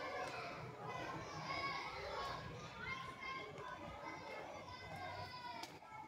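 Many children's voices chattering and calling together at a distance, a steady mixed babble of a school crowd, with one sharp click near the end.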